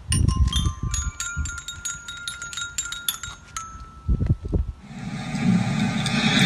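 Small metal chime notes struck again and again by children, each ringing on and overlapping, with wind rumble on the microphone. About five seconds in this gives way to buzzing kazoos.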